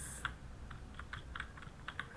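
Computer keyboard typing: a run of about ten quick, light keystrokes as a word is typed.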